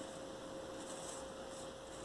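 Faint steady electrical hum with a constant mid-pitched tone over a light hiss, with faint soft rustling of satin ribbon being handled.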